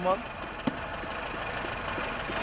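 LPG-fuelled engine of a 1980-model car idling steadily with a homemade air and exhaust-gas feed system fitted, and a single sharp click about two-thirds of a second in.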